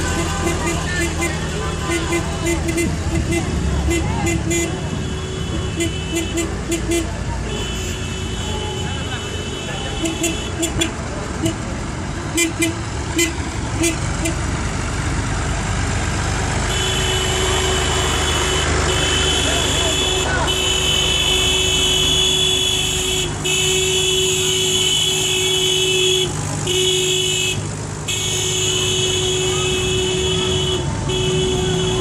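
Old farm tractor engines, a green John Deere among them, running as the tractors drive past in a procession, with one passing close about halfway through. Repeated horn toots sound through the first half, and a steady held tone runs through the second.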